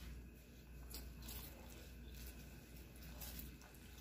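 Sugar syrup boiling in a thick aluminium saucepan, a faint, steady bubbling with small pops, as it cooks toward caramel but is not yet at the point.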